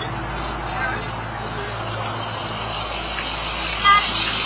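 Street audio picked up by a doorbell security camera: a steady hum of traffic noise with faint voices of people walking past, and a voice starting near the end.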